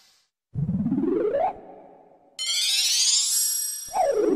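Synthesized cartoon sound effect cueing a magic gadget taking effect. A rising swoop comes about half a second in, then a high, sparkling shimmer climbs upward from about two and a half seconds, and a falling swoop starts at the very end.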